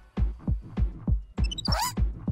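Cartoon heartbeat sound effect as heard through a stethoscope: fast, deep thumps, about four a second. A short sparkling, rising chime comes in about one and a half seconds in.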